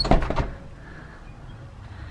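A house door being shut: a short clatter of knocks and clicks with a low thud in the first half-second.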